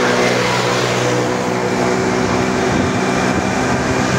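A motor vehicle on the move: a steady engine hum over an even rush of road noise.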